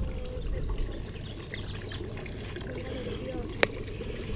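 Quiet outdoor background with a faint trickle of water and faint distant voices, broken by one sharp click a little before the end.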